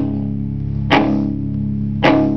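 Live band music between sung lines: guitar chords strummed about once a second and left ringing.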